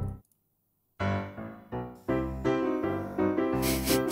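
About a second of silence, then a short melody of single piano notes played one after another.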